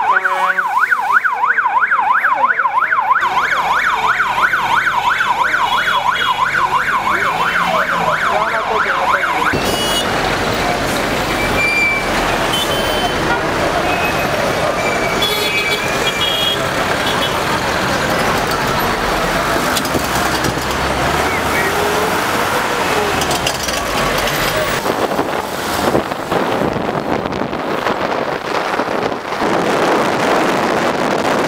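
An electronic vehicle siren in a fast up-and-down yelp, about four swings a second, which cuts off abruptly about nine seconds in. Then steady busy road traffic follows, with people's voices and brief car-horn toots.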